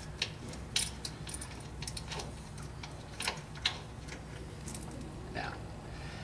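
Scattered light metallic clicks from a socket ratchet on extensions as a loosened spark plug is turned out of the cylinder head, over a steady low hum.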